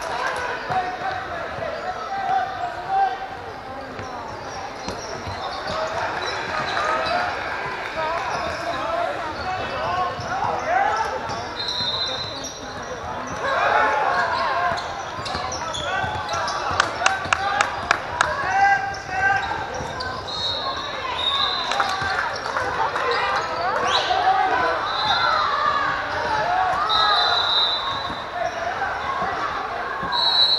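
Basketball being dribbled on a hardwood gym floor, with a run of about six quick, evenly spaced bounces a little past the middle, over a constant murmur of crowd chatter that echoes in the large hall. Several short high squeaks, typical of sneakers on the court, come through in the second half.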